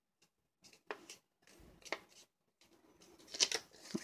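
An index card being folded in half and creased by hand: a few faint, short paper crinkles and taps, with a small cluster of them near the end.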